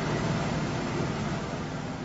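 Steady engine noise of a motor vehicle driving along, a sound effect that slowly fades toward the end.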